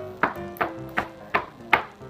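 A pair of shoes clapped together in a run of six sharp pops, over background music with a simple melody.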